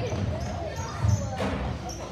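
A basketball bouncing on a gym floor as a player dribbles toward the basket, with a louder bounce about a second in. Voices echo in the large hall.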